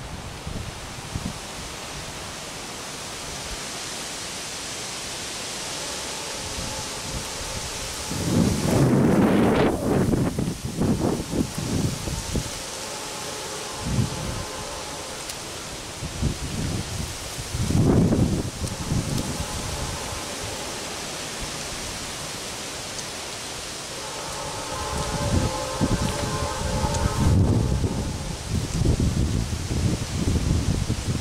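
Wind gusting through roadside trees, rustling leaves, with gusts buffeting the microphone in low rumbles about eight to eleven seconds in, near eighteen seconds, and again near the end.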